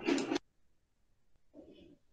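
A dog barks once, briefly, through a home video-call microphone in the first half second; near silence follows.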